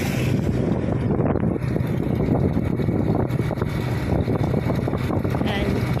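Motorcycle engine running steadily at cruising speed, with wind buffeting the microphone.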